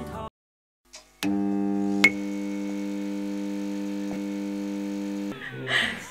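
A steady synthesizer chord, several tones held unchanged for about four seconds, with a sharp click about two seconds in. A moment of music and a short silence come before it, and voices begin just before the end.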